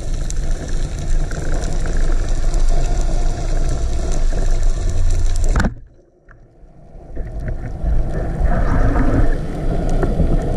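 Steady underwater rumble and hiss picked up by a camera mounted on a wooden speargun. Almost six seconds in the speargun fires with one sharp crack, and the sound drops out almost completely for about a second before building back to the same rumble.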